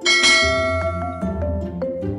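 A bright notification-bell chime sound effect rings out just at the start and fades over about a second, over light background music with short plucked notes.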